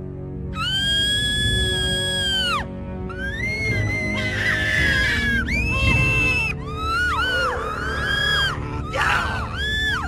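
Several voices screaming and yelling over a low music score. A long, high held scream begins about half a second in, then a run of shorter overlapping cries rises and falls in pitch.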